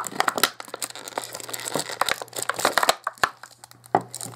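Clear plastic packaging crinkling and crackling as hands squeeze and handle it. The crackles come thick and fast for about three seconds, ease off briefly, then a sharp crackle comes near the end.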